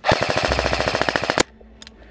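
Airsoft rifle firing a rapid full-auto burst of about a second and a half, with evenly spaced shots, then stopping suddenly.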